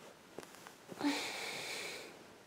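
A person sniffing close to the microphone: one breathy intake through the nose that starts about halfway in and lasts about a second, after a couple of faint clicks.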